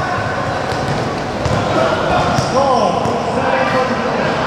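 Basketballs bouncing on a hard court in a large, echoing hall, over the steady chatter of many people.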